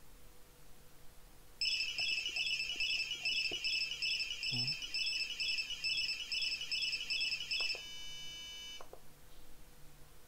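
Buzzer on a Pololu Zumo robot, driven from MATLAB through an Arduino Uno, sounding a rapid string of short high-pitched beeps for about six seconds, starting nearly two seconds in. It then holds a brief steady tone of another pitch, which stops about nine seconds in.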